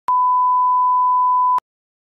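A 1 kHz test-tone beep over colour bars, one steady pure tone about a second and a half long that starts and stops abruptly with a click at each end.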